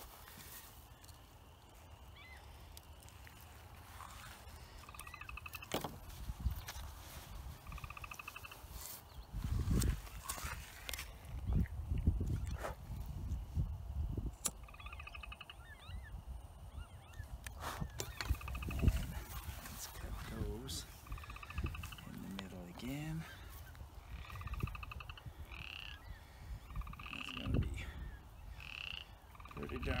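Frogs calling repeatedly: short pulsed croaks every second or two, coming more often in the second half. Gusts of wind rumble on the microphone, with a few light handling clicks.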